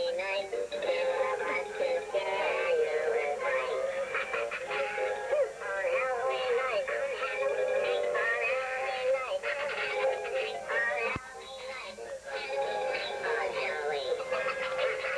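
Singing with music accompaniment, a wavering melodic voice throughout, with a short drop in level about eleven seconds in.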